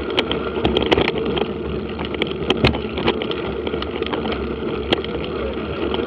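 Mountain bike riding along a dirt track: a steady noise of wind on the microphone and tyres on the ground, with scattered sharp clicks and rattles.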